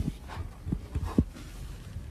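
A few soft, dull thuds, about four in two seconds, irregularly spaced, over faint background noise.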